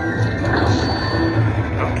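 Video slot machine's bonus-round music and electronic sound effects over casino background noise, a bright swooping chime near the end as the bonus character collects the credit values.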